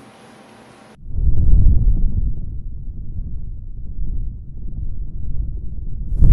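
Deep, low rumbling sound effect of an animated logo sequence, cutting in suddenly about a second in, loudest at first, then easing and swelling again.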